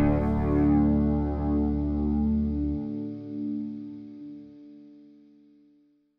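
Guitar's final chord ringing out and slowly fading away; the lowest notes stop about three seconds in, and the rest dies away by the end.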